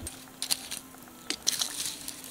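Scattered sharp crackles and clicks from a campfire's bed of hot coals as a foil-wrapped packet is set onto it with metal tongs, over a faint steady hum.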